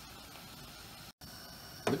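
Faint, steady hiss of water at a rolling boil in a wide pan on a gas stove, broken by a brief gap just past halfway.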